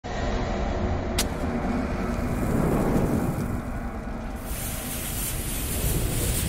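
Logo-intro sound effects: a steady low rumble with a sharp click about a second in, then a hiss that comes in around four and a half seconds as the cartoon bomb's fuse burns and sparks.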